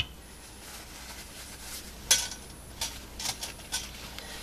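Kitchen utensils and dishes being handled: a few short clinks and knocks, the loudest about two seconds in, with smaller ones after it.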